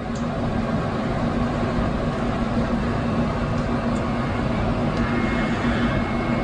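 Apple Xserve G5 cluster node powering up: its cooling fans spin up within a fraction of a second and then run at a loud, steady whir with a low hum.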